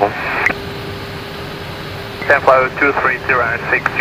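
Cockpit radio voice traffic, thin and narrow like speech over an aviation headset, over the steady air noise of an Airbus A319 cockpit. The talking breaks off about half a second in and starts again about two seconds in, leaving the cockpit hum and a faint steady tone on their own in the gap.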